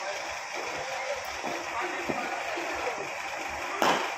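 Indoor cricket net practice: a steady hall hum with scattered low voices, and one loud, sharp crack of a cricket ball near the end.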